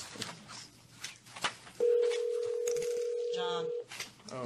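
Telephone ringback tone heard over the room's conference phone: one steady ring lasting about two seconds, starting a little under two seconds in, the sign that the dialled call is ringing at the other end and not yet answered.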